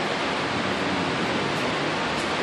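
Steady rushing noise of air-filtration machines running, moving and filtering the air on a floor under lead abatement.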